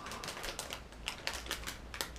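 Clear plastic packaging crinkling as it is handled and turned over in the hands, a quick irregular run of sharp crackles.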